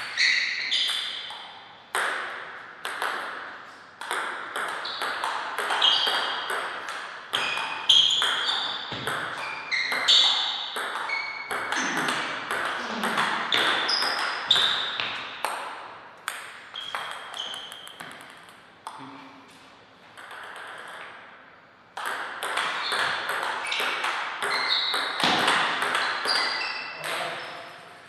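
Table tennis rallies: a celluloid ball struck by rubber-faced paddles and bouncing on the table, each contact a sharp click with a short ringing ping. The hits come in quick runs with a quieter stretch between points, then pick up again near the end.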